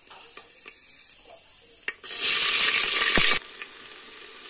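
Hot oil sizzling and crackling with spices in a metal pot, with a metal ladle stirring. About two seconds in, the sizzling turns loud for just over a second, then drops off abruptly to a quieter frying.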